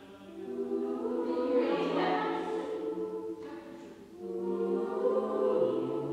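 Choir singing a slow passage of long, held chords, with a short break about four seconds in before the next phrase.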